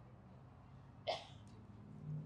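Pause in a man's speech: faint room tone with a low steady hum, and one brief vocal sound from him, like a quick breath, about a second in.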